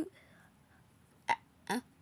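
A pause in a young speaker's stammering talk: near quiet, one short click about a second in, then a brief hesitant "uh".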